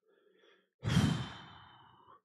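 A man sighing heavily into a close microphone: a sudden exhale just under a second in that trails off slowly.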